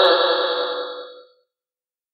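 A chanting voice holds a long, slightly wavering final note that fades away over about a second, then the sound stops.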